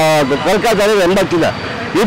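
A man speaking, drawing out one word at the start.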